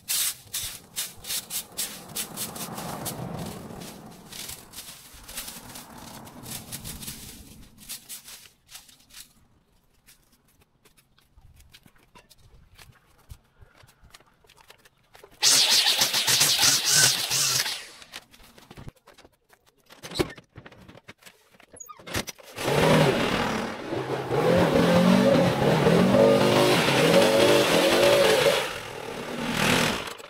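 Rake scraping and clicking over concrete, then a short burst of a cordless string trimmer cutting grass about halfway through. From about two-thirds of the way in, a Stihl backpack leaf blower's two-stroke engine starts up and runs loud, its pitch rising and falling as it is revved.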